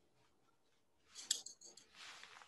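A few light metallic clicks and scrapes about a second in: a small metal tool knocking against a small sterling silver piece to settle wet enamel into its engraved grooves.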